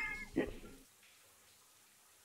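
A man's short, high-pitched laugh in the first half second, trailing off, followed by quiet room tone.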